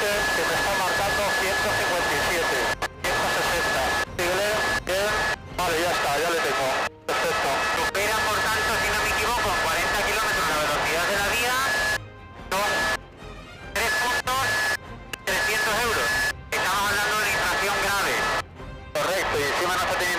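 Men talking over a helicopter's headset intercom, the cabin noise and a steady high whine cutting out abruptly between phrases, under background music.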